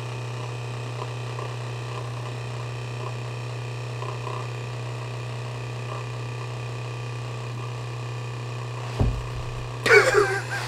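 Steady low electrical hum, with a short low thump about nine seconds in and a brief louder sound at the very end.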